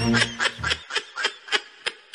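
High-pitched snickering laughter in short, quick bursts, about three a second, fading away. Background music with a bass line stops under a second in.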